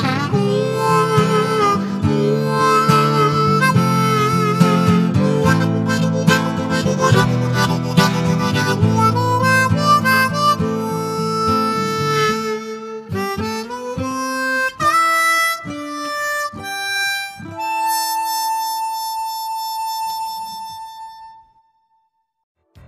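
Harmonica playing a wavering tune over full, thick chords, thinning after about twelve seconds to single separate notes. It ends on one long held note that fades out about a second before the end.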